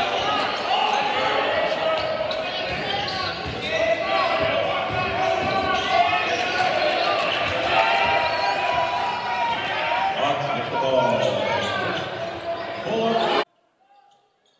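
Basketball being dribbled on a gym's hardwood floor amid the talk and shouts of spectators in the stands, echoing in a large hall. The sound cuts off abruptly near the end.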